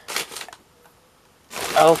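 A brief rustle of crumpled newspaper packing being handled inside a cardboard box, just after the start, then a pause.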